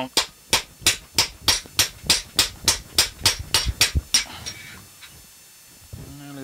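Hammer striking a drift to knock the old, rusted steering-head bearing cup out of a Yamaha DT400's headstock: a fast, even run of about a dozen sharp metal strikes, roughly three a second, stopping about four seconds in. The cup is coming out fairly easily.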